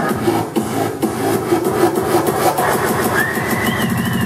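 Loud techno played over a party sound system, with a fast regular hi-hat tick and a high synth tone that slides up and holds near the end.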